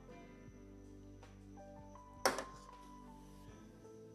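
Quiet background music with notes stepping upward, and a little over two seconds in a single short knock as the aluminium beer can is set down on the table.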